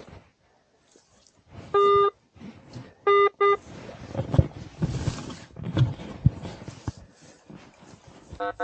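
Metal detector giving target tones as its coil passes over metal in the ground: one steady beep just under two seconds in, then two short beeps of the same pitch a second later. Rustling and a few knocks follow as the coil sweeps through the grass.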